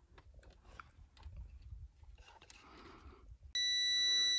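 Multimeter probe tips ticking and scraping faintly against a blade fuse's test pins. Near the end the Tesmen TM-510 digital multimeter's continuity beeper comes on with a steady high beep: the probes are across the fuse and it reads as good.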